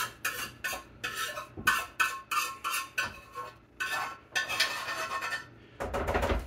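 A spoon scraping thick gravy out of a skillet into a bowl, in quick repeated strokes about three a second, with a short pause near the end.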